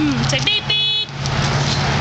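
Hard plastic wheels of a toddler's ride-on tricycle rolling over concrete as it is pushed along, a steady rumbling noise with a low hum under it. A brief high-pitched squeak sounds just before one second in.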